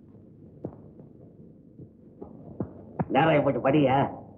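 A low, steady hum from the old film soundtrack, broken by a few faint clicks. About three seconds in, a loud voice cuts in and runs to the end.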